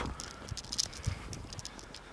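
Footsteps on a paved path, uneven soft knocks, with clicks and rustle from the handheld camera being moved.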